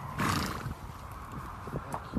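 Icelandic horse at close range giving one short, breathy blow through its nostrils, about half a second long, near the start.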